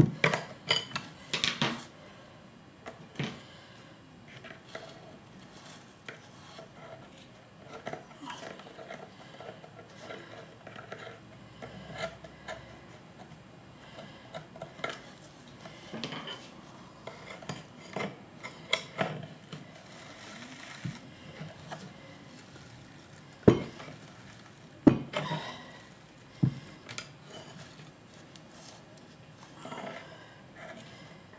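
Scattered clicks, taps and scratchy scrapes as a metal pick and brush work carded fleece off the wire teeth of a wooden drum carder. There are two sharp knocks about two-thirds of the way through.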